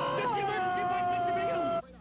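A man's long, drawn-out scream of panic, sliding slowly down in pitch and cutting off just before the end.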